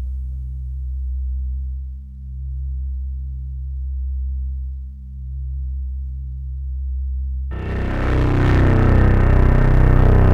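Electronic music: a deep, steady drone of low tones that swells and fades in slow waves. About three-quarters of the way through, a dense, bright wash of sound cuts in abruptly and louder.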